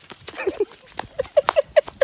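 A man laughing in a quick run of short 'ha' bursts, about five a second, starting about a second in.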